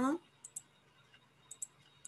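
Computer mouse clicks: a few short, sharp clicks in close pairs about a second apart.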